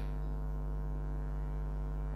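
Steady electrical mains hum: a low buzz with a stack of overtones, unchanging, with nothing else over it.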